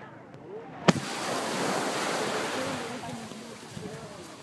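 Small waves washing on a sandy beach, the surf noise swelling for about two seconds and then easing, with wind on the microphone. A sharp click about a second in is the loudest sound.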